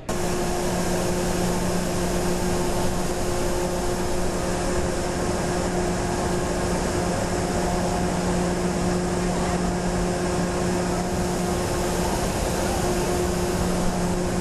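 Loud, steady rush of moving air with a constant low hum under it, like a large fan or engine running. It cuts in suddenly at the start and holds level throughout.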